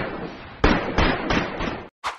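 Fireworks bangs from an animated game-show sequence's sound effects: a run of sharp bangs, each fading away, coming roughly three a second in the second half, which stops abruptly near the end.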